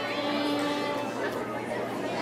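Two violins playing slowly under audience chatter in a large hall; a held violin note sounds in the first second, then the playing thins out beneath the murmur of voices.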